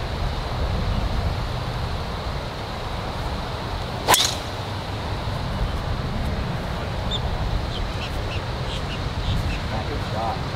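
A single sharp crack of a driver striking a golf ball off the tee, about four seconds in, over a steady low rumble of background noise.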